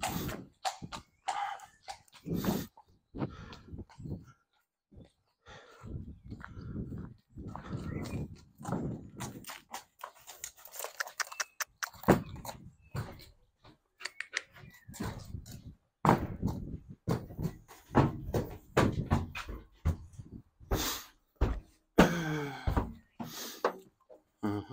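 A horse's hooves knocking and thudding irregularly, first on concrete and then on the ramp and floor of a horse trailer as it is loaded.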